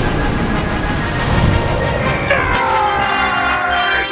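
Theme music for an animated intro, dense and loud, with a long falling glide in pitch through the second half.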